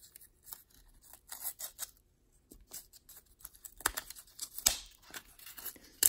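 Fingers peeling blue painter's tape and prying open a white cardboard wrap around a clear plastic card case: scattered small clicks, crinkles and scrapes, with two sharper clicks about four seconds in and just before five seconds.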